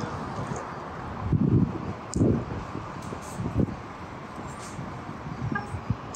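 Outdoor urban background noise with irregular dull low rumbles of wind buffeting a phone microphone, loudest about a second and a half and two seconds in.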